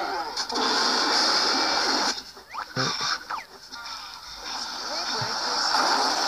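Cartoon soundtrack of a YouTube Poop edit playing through laptop speakers and picked up in the room. It opens with a steady hissing noise for about a second and a half, followed by short distorted cartoon voices that glide in pitch.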